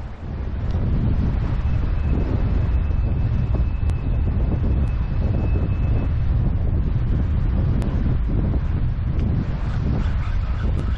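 Wind buffeting the microphone: a steady, heavy low rumble that comes up sharply about half a second in and holds.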